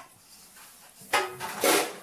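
Round aluminium cake pans clattering and clanging against each other: after a quiet first second, loud metallic strikes about a second in that keep ringing for most of a second, a racket.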